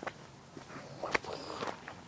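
A few irregular footsteps, short separate steps on the ground outdoors.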